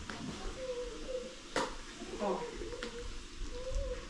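Cardboard packaging of a small electronics box being pulled open by hand, with a sharp snap about one and a half seconds in and a few lighter clicks. A soft wavering voice runs underneath.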